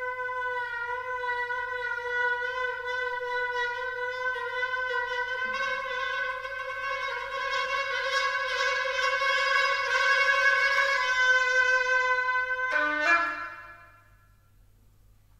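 Rigoutat oboe holding one long note, bending slightly in pitch and swelling louder and brighter through the middle. Near the end it breaks into a few quick notes, including a lower one, then stops.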